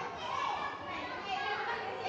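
A group of young children chattering and calling out, several high-pitched voices overlapping.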